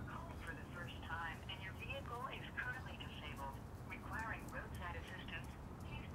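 Faint speech heard over a telephone, thin and cut off above the voice's upper range, in broken phrases.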